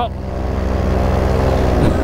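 Paramotor engine and propeller running steadily in flight, a low even drone that swells slightly through the middle.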